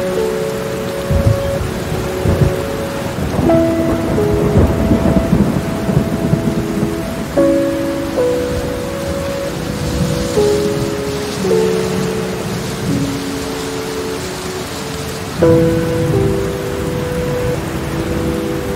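Steady heavy rain with repeated low rumbles of thunder, the strongest a few seconds in and again near the end. Soft sustained music chords, changing about every four seconds, are mixed in underneath.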